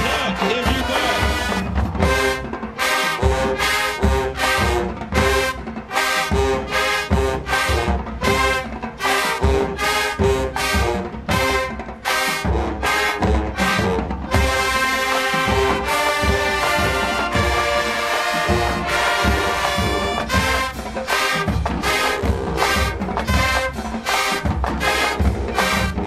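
High school marching band playing: a brass section with trumpets, trombones and sousaphones over a drumline, at a steady beat. Mostly short punchy hits, with longer held brass chords for a few seconds about halfway through.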